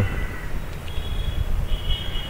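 Steady background noise, a low rumble with hiss, joined about a second in by a faint high steady tone.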